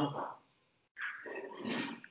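The end of a man's drawn-out spoken "uh", then about a second of faint, even hiss-like noise with no clear pitch.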